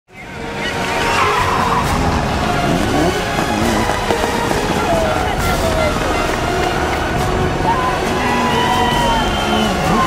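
Rally car engines revving and passing at speed, with pitch rising and falling, in a dense mix that fades in at the start.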